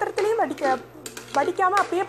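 Someone talking, over a metal spoon stirring and clinking against the side of an aluminium pressure cooker pot.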